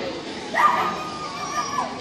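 A dog whining: one long, high-pitched whine that starts about half a second in and fades away just before the end.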